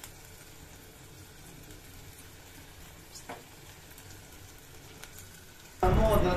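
Faint, steady sizzling hiss from a sealed dum biryani pot on the stove as a fork pries off its dough seal, with one small click about three seconds in. A loud sound cuts in abruptly just before the end.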